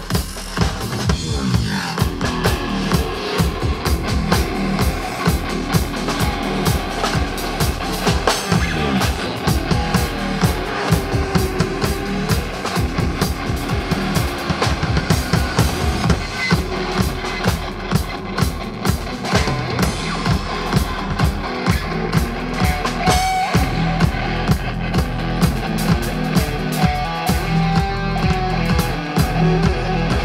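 A live band plays EDM-flavoured rock: an electric guitar over a drum kit keeping a steady, driving beat.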